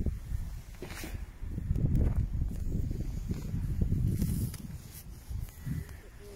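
Wind buffeting the microphone, a low irregular rumble, with a couple of faint clicks about one and two seconds in.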